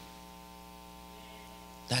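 Steady electrical mains hum picked up through the microphone, a low buzz with many evenly spaced overtones, heard in a gap between spoken words; a man's voice comes back right at the end.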